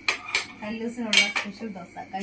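Metal kitchen utensils clinking against steel cookware, about four sharp clinks, each with a brief ring.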